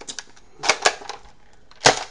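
Plastic clicks and clacks of a Buzzbee Predator bolt-action dart blaster being handled while it is loaded and readied: a few faint clicks, two sharper clicks just under a second in, and one loud clack near the end.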